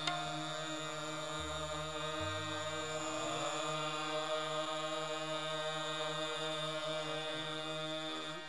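Harmonium holding a steady drone chord with a slow melody moving over it.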